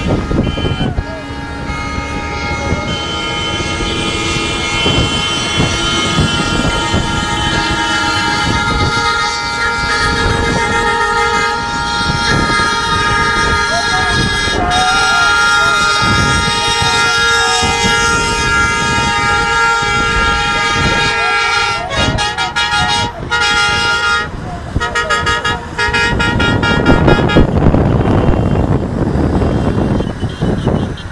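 Several vehicle horns held down in long, continuous honking over engine noise, with men's voices. A little before three-quarters through, the horns break into short toots, and a louder rushing noise takes over near the end.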